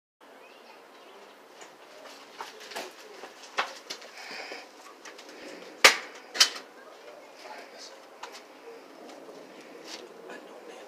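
Scattered sharp knocks and taps over faint background noise, the two loudest just over half a second apart near the middle.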